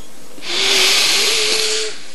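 A long, rushing intake of breath into a close microphone, lasting about a second and a half, as a Quran reciter draws breath before his next phrase.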